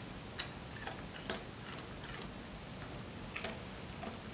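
A few light, separate clicks and taps of small bottles and plastic caps being handled, the sharpest about a second in and another near the end.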